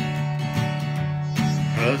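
Acoustic guitar with a capo, strummed in a steady rhythm between sung lines; the singer's voice comes back in near the end.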